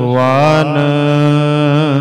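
A man singing one long held, slightly wavering note in a line of Sikh Gurbani kirtan over a steady low drone; the note bends down near the end.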